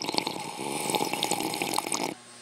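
Drinking from a glass: liquid sloshing and being gulped, with many small clicks throughout.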